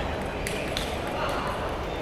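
Light sharp clicks of table tennis balls hitting tables and bats, a few scattered through the two seconds, over a steady murmur of voices echoing in a large hall.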